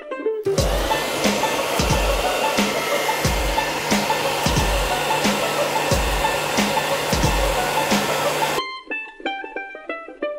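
Handheld hair dryer running at close range, a loud steady blast of air with a hum and regular low thuds, drying crackle texture paint on a miniature's base. It starts about half a second in and cuts off shortly before the end, with plucked-string background music on either side.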